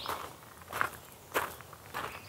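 Footsteps crunching on loose gravel: a person walking at a steady pace, about four steps.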